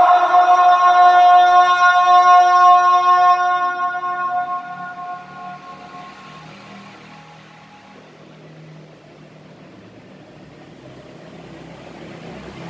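A man singing the adhan (Islamic call to prayer) in maqam Rast, holding the last note of 'ashhadu anna Muhammadan rasulullah' on one long high pitch that fades away about four seconds in. A pause follows with only a faint low hum in the room.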